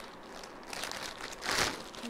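Clear plastic packaging crinkling and rustling as it is handled, loudest about one and a half seconds in.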